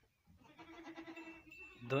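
A faint, steady-pitched farm-animal bleat lasting about a second. Just before the end a voice starts singing loudly in long, wavering notes.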